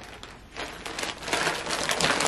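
Rustling and crinkling of things being handled and shifted, faint at first and louder from about halfway through.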